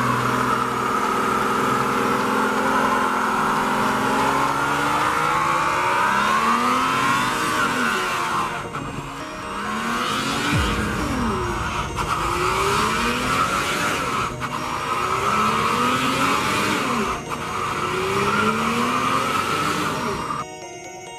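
Car doing a burnout: tyres squealing continuously on the pavement while the engine is held high, then revved up and dropped again and again, roughly every second and a half, through the second half.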